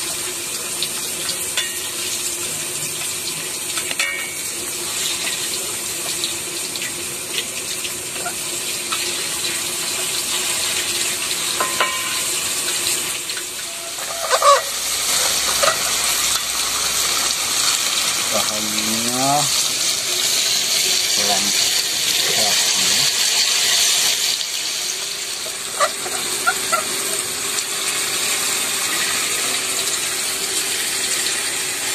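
Tofu deep-frying in hot oil in a steel wok, a steady sizzle that grows louder in the middle stretch, with a bamboo spatula knocking and scraping as the pieces are turned.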